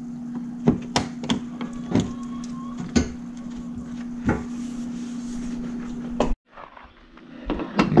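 Sharp plastic clicks and knocks as a hard plastic trim piece beside a Toyota Tundra's headlight is pried and pulled loose by hand, over a steady low hum. The sound cuts off abruptly a little after six seconds in.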